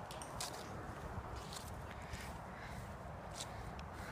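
Footsteps on grass with a low steady rumble on the phone's microphone and a scattering of faint light clicks.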